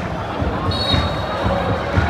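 Stadium crowd of football supporters chanting together, over a steady run of low drum beats a few times a second.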